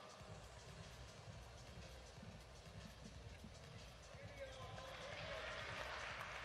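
Faint indoor arena ambience: a low murmur of distant voices with soft, irregular low thuds, growing slightly louder near the end.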